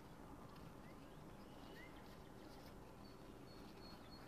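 Near silence: faint outdoor background with a few faint bird chirps, two short rising ones in the first half and a run of short, high peeps near the end.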